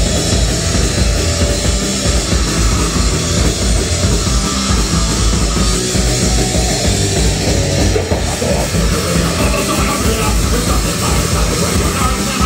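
Live punk rock band playing loud and fast: distorted electric guitars, bass guitar and a drum kit driving on together. It is an instrumental stretch of the song with no singing.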